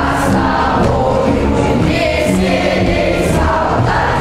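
A group of schoolchildren singing a patriotic marching song together in chorus as they march in formation.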